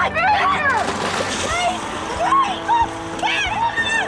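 People's voices calling out over splashing.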